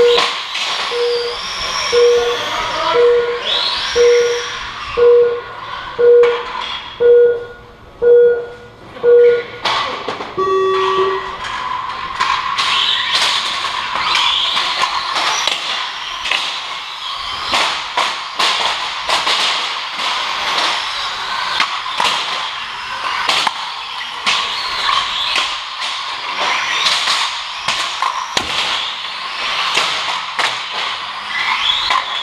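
About ten short electronic beeps, one a second, followed about ten seconds in by a single longer, lower tone, like a race-start countdown. Then radio-controlled stock cars run on the concrete oval, a dense high-pitched mix of motors and tyres broken by frequent sharp knocks as the cars make contact.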